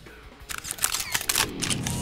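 A rapid string of camera shutter clicks, a sound effect in a TV show's logo transition, starting about half a second in, with a sweeping tone building under them near the end.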